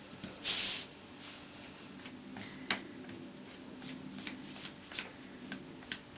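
Light dry-brush strokes of a flat paintbrush rubbing over a polyester frame: a short bristle swish about half a second in, then soft scratching and scattered small ticks of the brush against the frame.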